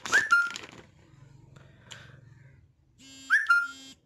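A short whistle-like chirp, rising and then holding a steady tone, heard twice about three seconds apart.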